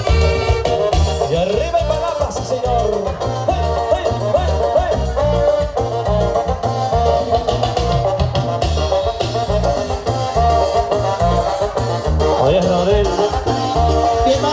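Live dance orchestra playing a Latin son: a melody line carried over a steady bass beat, with light rattle percussion.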